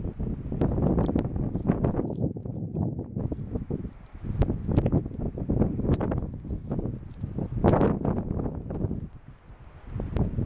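Wind buffeting the microphone in gusts, a low rumbling noise that rises and falls, with scattered sharp clicks; it eases off near the end.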